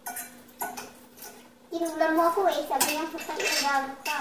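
Spoons and forks clinking a few times against ceramic dinner plates as people eat. From a little under halfway in, a woman's voice talking is louder than the clinks.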